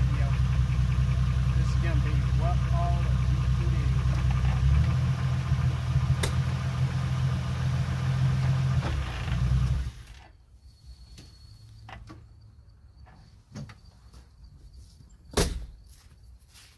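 Jeep Wrangler engine idling steadily, then switched off about ten seconds in. The engine cuts out abruptly, leaving faint clicks and a single sharp knock near the end.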